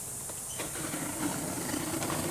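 Folding knife blade drawn along the taped seam of a cardboard box, slitting the packing tape with a steady scraping sound that starts about half a second in and grows slightly louder.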